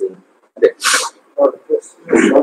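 Brief, indistinct fragments of a man's speech, with a short, sharp hiss about a second in.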